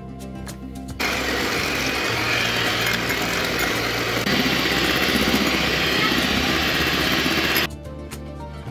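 Electric hand mixer running with its beaters whipping egg whites in a glass bowl, working them into stiff foam. It starts about a second in, gets louder about four seconds in, and cuts off just before the end, over background music.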